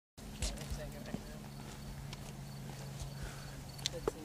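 Outdoor ambience with a steady low hum, scattered sharp clicks and knocks at irregular spacing, and faint voices in the background.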